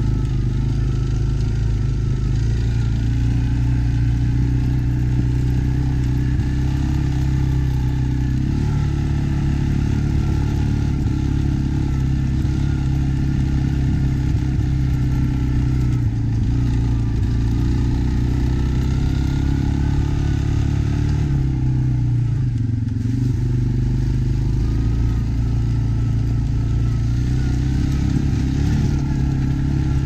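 ATV engine running steadily while riding over a gravel track, its note shifting slightly a couple of times.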